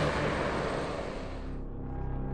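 Krone BiG X self-propelled forage harvester running and chopping maize: a dense, steady machine noise that fades away about a second and a half in, leaving a low hum.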